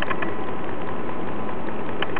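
Homemade battery-driven Newman-style motor with a spinning permanent magnet, running with a steady hiss and faint steady tones.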